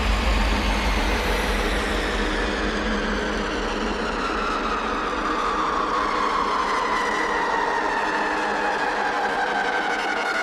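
Psytrance breakdown: the kick and bass drop out, leaving a noisy synth wash with slow, falling sweeping tones.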